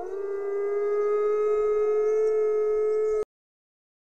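Several gray wolves howling together in long, held notes at different pitches. The chorus cuts off suddenly about three seconds in.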